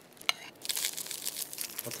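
Close-miked butter knife scraping across a slice of white bread, then hundreds and thousands sprinkles shaken onto it from a plastic shaker. There is a sharp click about a third of a second in, then a dense crackling patter.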